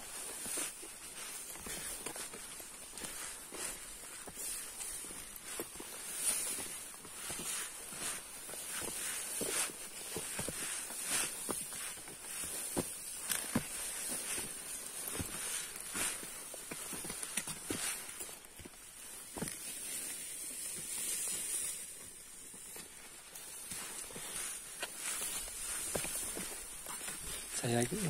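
Footsteps of hikers on a muddy dirt trail through tall grass, irregular steps, over a steady high-pitched hiss.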